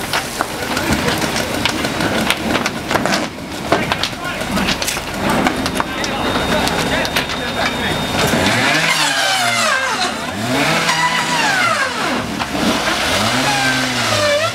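Fire hose streams spraying water onto a burning structure and scrap pile, a steady hiss with scattered crackles and knocks. Past the middle, a pitched mechanical sound rises and falls three times, about every two seconds.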